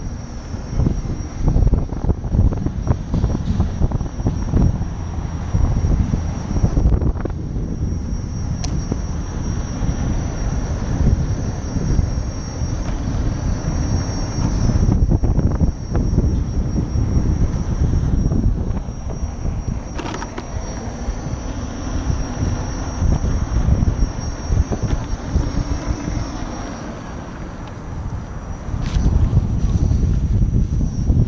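Wind buffeting the microphone and tyre rumble from a Gotway electric unicycle riding over pavement, loud and gusty, with a thin steady high-pitched whine throughout.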